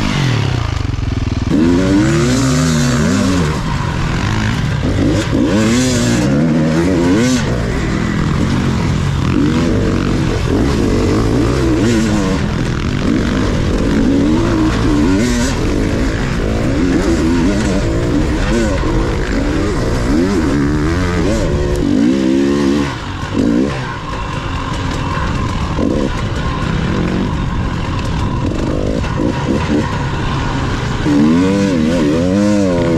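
Enduro dirt bike engine revving up and down over and over as it is ridden hard through sand, the pitch climbing and falling every second or two.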